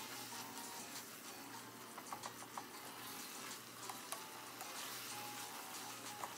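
Minced dullet meat sizzling faintly in a pot as it is stirred with a wooden spoon, with a few light knocks of the spoon against the pot about two seconds in and again about four seconds in.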